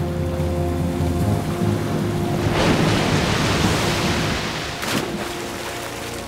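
Sustained dramatic score of held tones. About two and a half seconds in, a big sea wave crashes over it in a rush of water lasting about two seconds, followed by a brief second splash.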